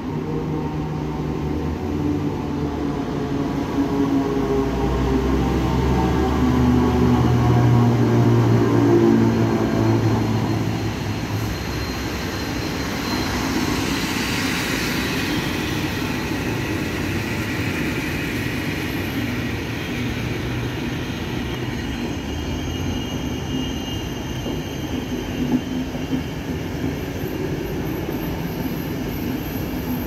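Electric locomotive-hauled passenger train of PKP Intercity coaches passing close by. The locomotive's hum is loudest in the first ten seconds, then the coaches keep up a steady rolling rumble over the rails.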